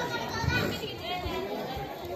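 Children's voices calling and shouting in a large hall, with a couple of dull thumps.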